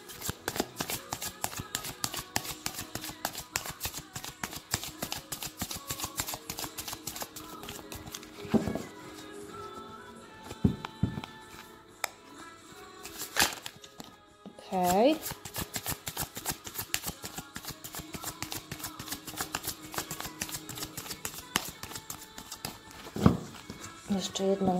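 A tarot deck being shuffled by hand: a fast, continuous run of soft clicks and flicks as the cards slide over one another, with steady background music underneath.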